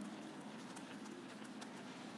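Faint rubbing and a few light knocks of a handheld eraser being wiped across a whiteboard.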